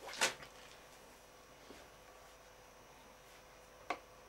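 A single sharp metal clack as the sheet-metal guard of a diamond-disc grinder is handled and shifted, then quiet, with a short click just before the end as the cover is lifted away.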